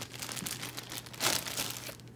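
Plastic zip-top bags crinkling as they are handled and shifted by hand, a run of irregular rustles, loudest a little past the middle.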